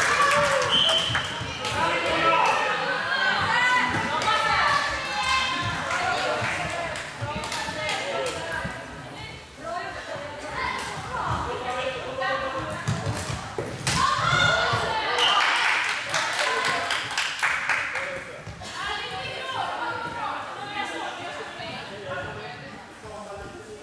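Floorball players calling and shouting to each other, echoing in a large sports hall, with repeated sharp clacks of sticks striking the plastic ball and each other.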